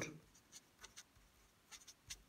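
A marker writing a word on a paper test booklet: a few faint, short scratching strokes of the tip on the paper.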